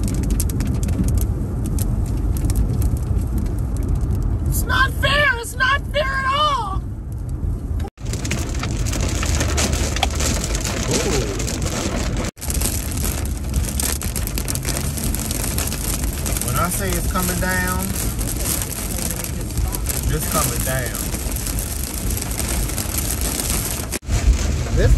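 Car interior noise while driving on a wet highway in the rain: a steady road and engine rumble with tyre-spray hiss. The hiss grows brighter about eight seconds in.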